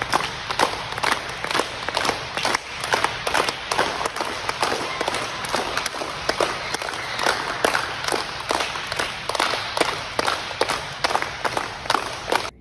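A group of children clapping their hands in a gym, many uneven claps a second overlapping into a continuous patter.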